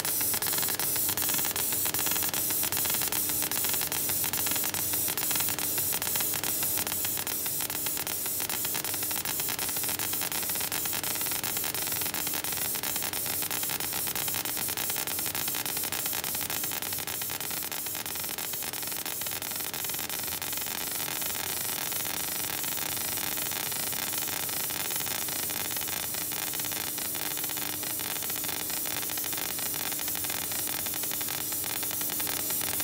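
3D galvo CO2 laser engraving machine marking the surface of tempered glass: a steady hissing noise with fine rapid crackle and a low steady hum.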